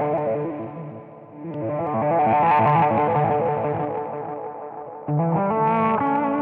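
Electric guitar chords played through an optical tremolo pedal with an overdrive pedal, the tone chopped on and off in a fast, even pulse. A new chord is strummed about a second and a half in and again near the end, each one fading under the pulsing.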